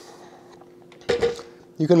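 A food processor set down onto a wooden cutting board, one short clunk about a second in, over a faint steady hum.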